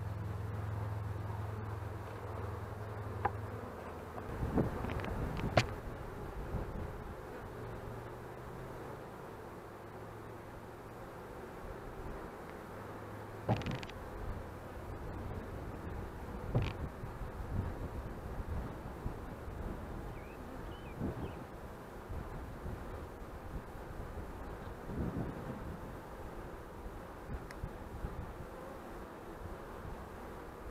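Honey bee swarm buzzing around an open hive box, with a few sharp knocks and rustles as gloved hands shake clusters of bees off a vine into the box.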